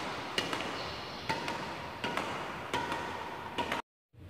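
Badminton racket driving a shuttlecock against a wall in a rally drill: a series of sharp strikes, about one a second, over a faint steady hum. The sound cuts off suddenly just before the end.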